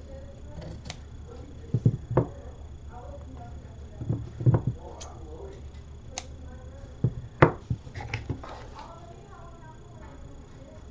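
Scissors snipping a paper napkin, a few sharp snips in clusters about two, four and a half, and seven to eight seconds in, over faint voices in the background.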